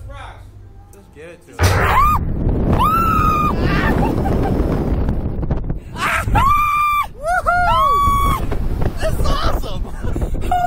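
Two riders on a slingshot reverse-bungee ride screaming as they are launched into the air. A loud rush of wind on the ride's camera starts suddenly about a second and a half in. Short screams follow, then several long overlapping screams a few seconds later.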